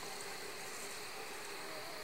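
Faint, steady chorus of night insects, a constant high-pitched hum over a light hiss.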